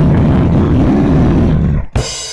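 A deep, guttural growled vocal, a drawn-out laugh-like roar, stops suddenly with a sharp click near the end.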